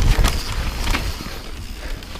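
Mountain bike rolling fast down a loose dirt singletrack: a steady low rumble of wind on the microphone and tyres on the ground, with a few sharp clicks and rattles from the bike over the rough surface.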